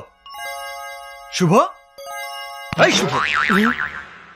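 Film soundtrack: soft chime-like music with sustained ringing tones, a man's voice loudly calling a name once with a falling pitch, then a sudden warbling comic sound effect starting about three seconds in.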